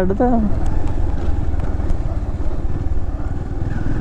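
Motorcycle engine running steadily under way, with road and wind noise, heard from the rider's seat.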